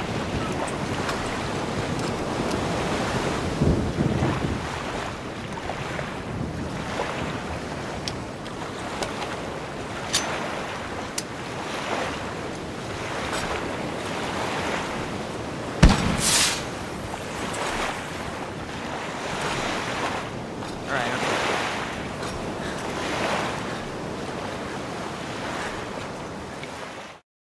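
Stormy sea: waves and wind blowing steadily, with a single loud, sharp crack about sixteen seconds in and a smaller knock about four seconds in.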